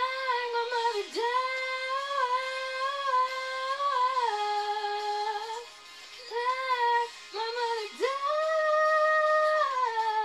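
A young woman singing long held notes, each scooping up in pitch at its start, with a few short breaks between phrases.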